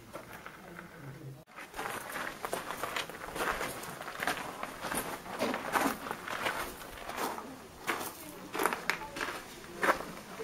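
Footsteps crunching on a gravel and stone path, an uneven run of steps that starts about a second and a half in.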